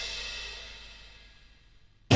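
The final chord and cymbal crash of a short musical intro ringing out and fading away over about a second and a half.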